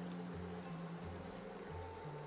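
Quiet background music with a low, stepping bass line, over faint bubbling of sugar syrup boiling in a steel saucepan.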